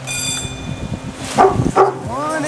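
A dog barking twice in quick succession, the two barks about half a second apart near the end, over a faint background.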